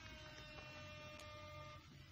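A very faint electronic tone held with overtones over a low hum, fading out near the end.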